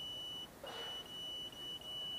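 Satellite-finder meter sounding a steady high-pitched beep tone, broken once about half a second in, as the dish is swung onto the satellite: the tone signals that a signal has been found.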